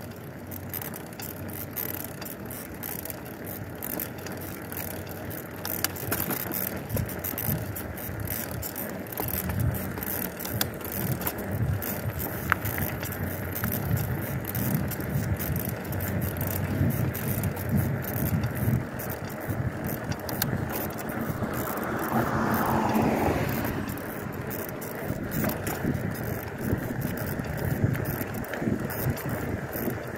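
Bicycle being ridden over concrete sidewalk and pavement: steady rolling noise from the tyres, with many small clicks and rattles from the bike. A brief louder swell that falls in pitch comes about two-thirds of the way through.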